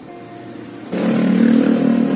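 A motor vehicle's engine running steadily. It comes in suddenly and loudly about a second in.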